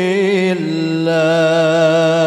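Sholawat, Islamic devotional chanting in praise of the Prophet, sung by one voice in long melismatic held notes with vibrato. The pitch steps down to a lower note about half a second in, and that note is held.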